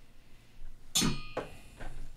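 A sharp knock with a brief ringing tone about a second in, then two softer knocks: something hard being handled on a desk.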